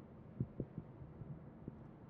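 Faint low rumble of a moving car heard from inside the cabin, with a few soft low thumps: three in quick succession about half a second in and one more near the end.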